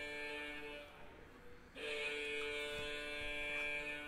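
Electric alarm buzzer sounding in long, steady blasts. One blast ends about a second in, and another starts just before two seconds and runs on. It is the big-hit alarm for a one-of-one card pull.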